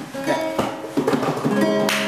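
Acoustic guitar played by hand: a few plucked chords and single notes that ring on, the introduction to a slow bolero song.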